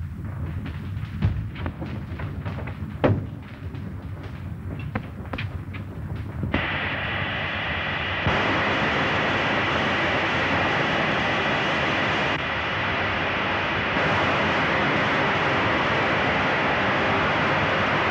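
Gas hissing out of an airship's valve as it is opened: a loud, steady hiss begins about a third of the way in and grows stronger a couple of seconds later. Before it there is a low hum with a few knocks. It is an early-1930s film sound effect.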